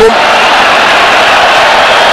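Steady noise of a large football stadium crowd, an even wash of sound with no single shout or chant standing out.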